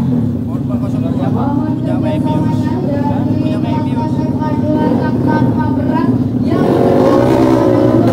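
Engines running steadily in the background, a constant low drone, with people talking close by.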